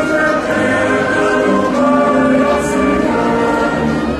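A choir singing a hymn in sustained, slow-moving notes, the entrance hymn at the start of a Catholic Mass.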